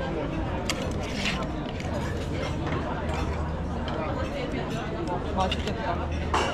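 Chatter of many diners talking at once, a steady babble of voices, with a few light clicks about a second in and again near the end.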